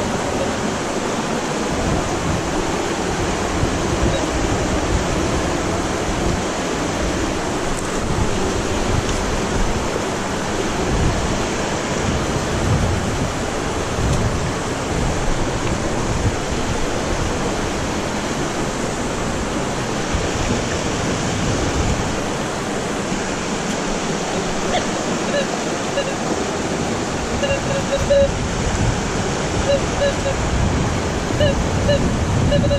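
A river rushing steadily, a continuous loud wash of flowing water.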